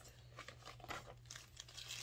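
Faint rustling and crinkling of a kraft paper mailer and a plastic poly bag being handled, a string of short soft scrapes.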